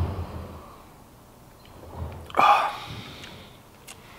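A man sipping stout from a pint glass, then one short, breathy exhale about two and a half seconds in, as he swallows and tastes it.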